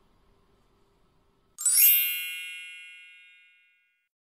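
A single bright chime sound effect about a second and a half in, ringing with many high tones and fading out over about two seconds, used as a transition sting for a title card.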